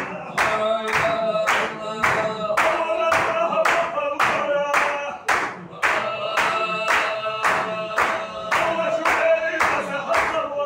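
Sufi zikr: a group of men chanting together on a held melody while clapping their hands in a steady beat, about three claps a second.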